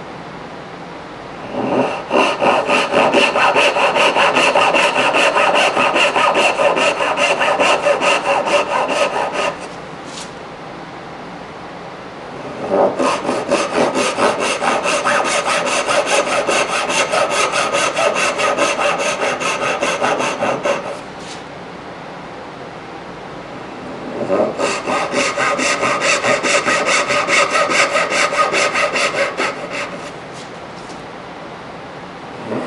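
Dovetail backsaw cutting dovetail tails freehand in a curly maple board. There are three runs of steady back-and-forth strokes, each several seconds long, with short pauses between the cuts; the first run starts about two seconds in.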